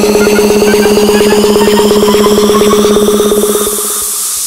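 Minimal techno track: a held, buzzing synth tone chopped into a very fast pulse, with small repeating blips above it. Near the end a hiss of white noise swells up as the track drops into a break.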